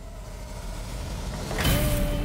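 Horror-trailer sound design: a low rumbling drone that swells steadily, then a loud hit about one and a half seconds in, followed by a held low tone.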